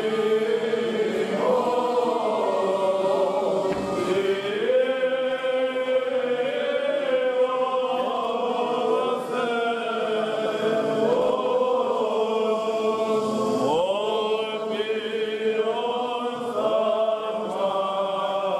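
Greek Orthodox Byzantine chant sung by several voices: long held notes that slide and ornament between pitches over a steady low held note.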